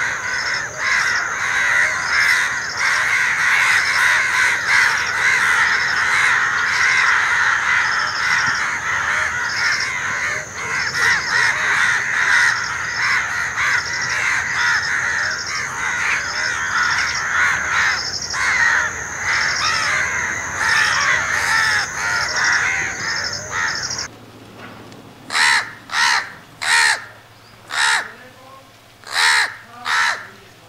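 A dense chorus of many house crows calling over one another, with a steady high whine above it. About 24 seconds in it stops abruptly, and single loud house crow caws follow in quick succession, roughly one or two a second.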